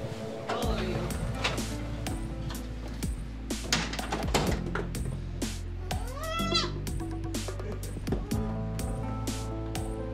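A baby goat's small hooves tapping on a hardwood floor in quick, irregular clicks, with one short bleat about six seconds in that rises and falls in pitch.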